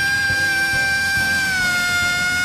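Female gospel soloist belting one long high note into a microphone, held steady and dipping slightly in pitch about three-quarters of the way through, over faint band accompaniment.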